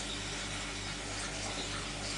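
Steady background noise: an even hiss with a low, constant hum underneath.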